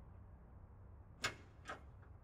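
Two short sharp clicks about half a second apart, the first louder, over a faint low rumble.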